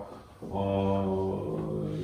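A man's drawn-out hesitation sound 'aaa', held at a nearly level pitch for about a second and a half, starting about half a second in.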